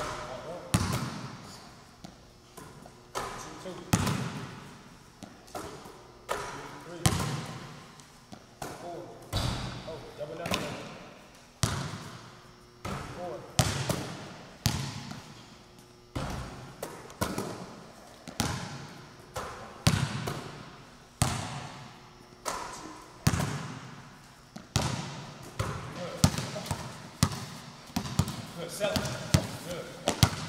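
Basketball bouncing on a gym floor, a sharp thump every second or so, each ringing out in the echoing hall, with indistinct voices now and then.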